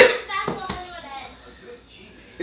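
Indistinct, wordless voices, following a loud noisy burst that fades out at the very start.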